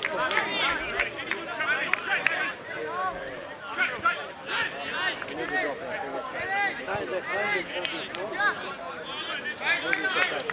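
Several men's voices talking and calling out over one another at a football match, an overlapping chatter with no single clear speaker.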